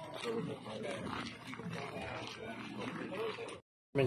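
Indistinct people's voices talking in the background. The sound cuts out completely for a moment near the end.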